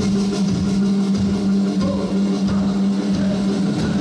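Live band and ensemble playing a loud instrumental passage together, with a steady held low note and drum strokes on top.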